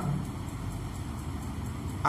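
Steady low background rumble with no distinct events: room and recording noise in a pause in speech.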